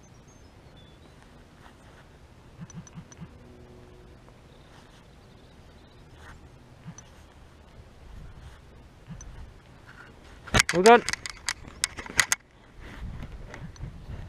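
A spectator's rising whoop together with a quick run of hand claps, about two seconds long, starting about ten seconds in, cheering a passing runner; low thuds of footsteps on the ground follow near the end.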